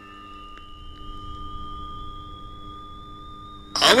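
Steady electronic tones: a high whine that rises slowly in pitch throughout, over a steadier lower tone. Speech cuts in near the end.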